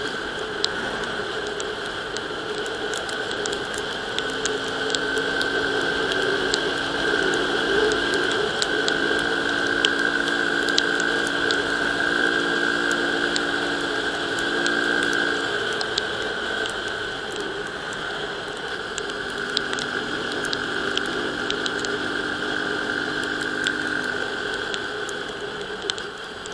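Euro Rapido 110 motorcycle running at cruising speed on a wet road, its engine a steady hum that drops away for a few seconds midway, under continuous wind and tyre noise. Scattered light ticks of raindrops hitting the camera.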